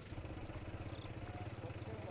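A small engine running faintly and steadily: a low hum with a fast, even pulse.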